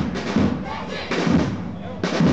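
Marching band drum line playing: bass drums thudding in a beat, with snare drums rattling over them.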